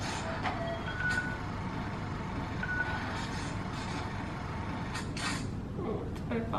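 Steady street-like background noise from a music video's outro, with a few short high beeps in the first few seconds and a brief click about five seconds in.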